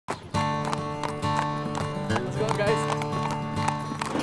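A horse's hooves clip-clopping at a walk on pavement, about four strikes a second, over music with sustained chords.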